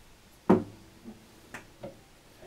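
Instrument handling: one sharp wooden knock with a brief ring about half a second in, as an acoustic guitar is set against a wooden table. Two faint taps follow near the end as a ukulele is picked up.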